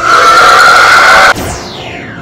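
A loud, harsh sound effect that cuts off suddenly a little over a second in, followed by a whistle-like glide falling in pitch.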